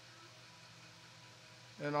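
Faint room tone with a low steady hum, then a voice starts speaking near the end.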